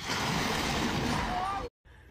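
Ford Ranger pickup truck crashing through a chain-link fence: a loud, noisy crash of about a second and a half, with a voice shouting near the end, cut off suddenly.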